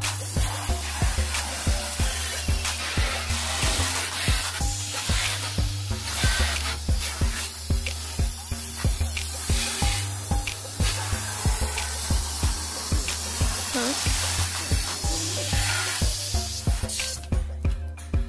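Garden hose spray nozzle jetting water onto a car's front bumper: a steady hiss that stops near the end. Background music with a steady beat plays underneath.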